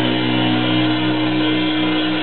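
Amplified electric bass and guitar letting the final chord of a punk garage rock song ring out, held steady with a slight wavering and no drums.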